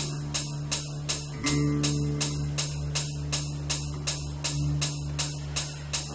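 Drone music from a Trikanta Veena run through live electronics: sustained low drone notes over a steady ticking pulse of about three ticks a second. A fresh drone note swells in about one and a half seconds in.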